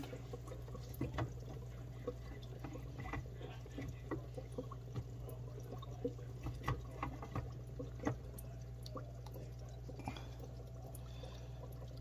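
Faint aquarium water sounds: steady trickling and bubbling over a constant low hum, with scattered small ticks and drips.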